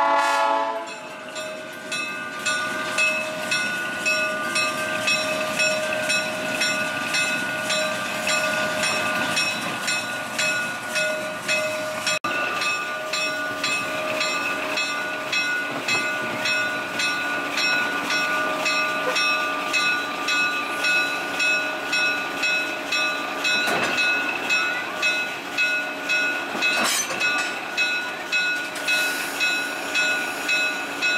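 Diesel locomotive bell ringing in a steady rhythm, about two strokes a second, with the end of the locomotive's air horn at the very start. Two sharp clanks come near the end.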